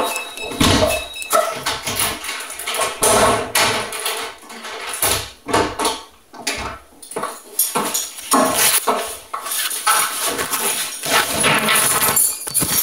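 Rustling and knocking handling noise from a camera carried against clothing as its wearer moves, with scattered clicks and clunks.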